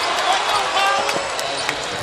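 Basketball arena game sound: steady crowd noise from the stands, with a ball being dribbled on the hardwood court and faint distant voices.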